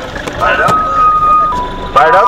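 Vehicle horn blaring: a held high note that steps down to a lower note about one and a half seconds in, then both notes together near the end, over a low rumble.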